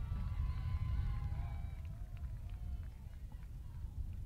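Outdoor football stadium ambience: a steady low rumble with faint, distant voices from the crowd and field, easing slightly toward the end.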